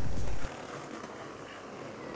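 Hip-hop backing music cuts off about half a second in, leaving a steady rushing noise of skateboard wheels rolling on street paving.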